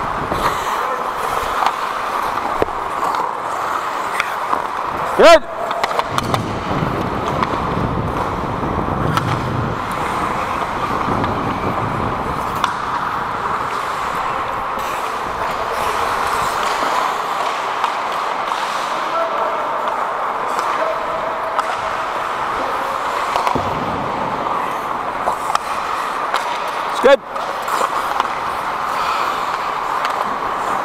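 On-ice sound of a recreational ice hockey game from a skating referee's helmet camera: a steady rush of skate blades on the ice, with players' voices. Two brief, very loud sounds stand out, one about five seconds in and one near the end.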